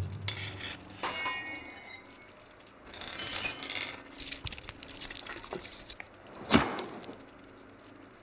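Steel bar clinking and ringing as it is handled and bent, with a brief ringing scrape a few seconds in and a single sharp knock about six and a half seconds in.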